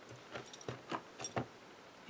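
Faint light taps and clicks, about five, from a hand pressing a clear acrylic stamp down through the lid of a stamping platform to re-ink the impression.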